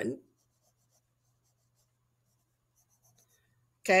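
Faint scratching of a pen writing on a workbook page, a few short strokes shortly before the end, over near silence with a low steady hum.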